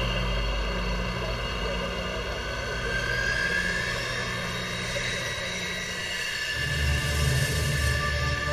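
Aircraft engine running steadily, with a whine that rises slowly in pitch over several seconds. Low, pulsing music comes in about six and a half seconds in.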